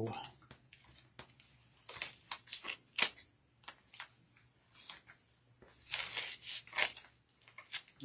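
Scissors snipping through the clear packing tape and cardboard of a mailer, with crinkling of the envelope as it is handled. The cuts come in short, scattered runs, one about two to three seconds in and another around six seconds.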